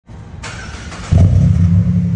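Car exhaust at the twin tailpipes, running and then jumping to a loud, steady low drone about a second in.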